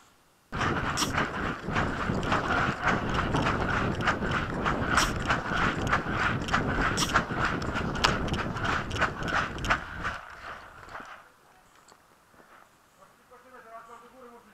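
A person running over forest ground with a head-mounted camera: quick, uneven footfalls with kit and camera jostling. It starts abruptly about half a second in and stops about ten seconds in.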